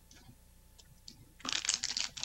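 Quiet with a faint low hum for about a second and a half, then a quick flurry of sharp clicks and crackles near the end.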